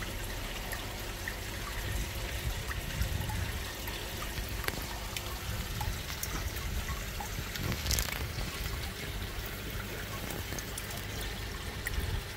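Water pouring and trickling steadily into koi holding tanks, as from a tank's filter return, with one brief sharp click about two-thirds of the way through.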